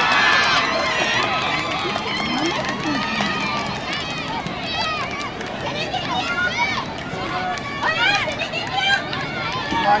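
Many excited, high-pitched voices shouting and cheering at once, overlapping calls that mark a goal just scored from a long free kick.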